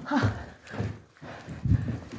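Footsteps, a thud roughly every three-quarters of a second, with rustling close to the phone's microphone.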